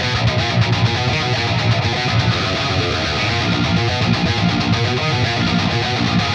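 Heavily distorted metal rhythm guitar riff played back through the Neural DSP Fortin Nameless amp simulator, its cab sim blending a second Dynamic 906 microphone under the first.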